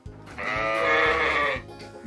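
A sheep bleating once, a wavering call about a second long that starts about half a second in, over light background music.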